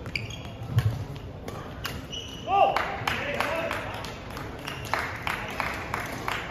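Badminton rally on a wooden sports-hall floor: sharp racket-on-shuttlecock hits and short high squeaks of sneakers on the court, the loudest squeak about two and a half seconds in. After that the play stops and voices take over.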